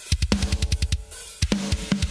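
A metal drum recording played back through the heavily compressed parallel compression bus on its own: rapid kick drum strokes with snare and cymbals, loud and squashed.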